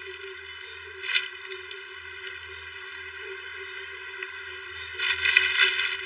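Plastic garment bags crinkling as clothes are handled and pulled out of them, in a short burst about a second in and a longer, louder stretch near the end, over steady background music.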